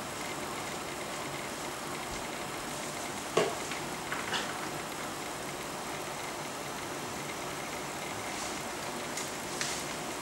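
Steady hiss of room noise, with one sharp knock about three and a half seconds in and a few fainter clicks after it and near the end.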